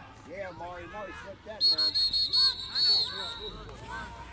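A referee's pea whistle blown in a run of short trilling blasts for about two seconds, starting about a second and a half in, signalling the play dead. Distant shouting voices of players and spectators run underneath.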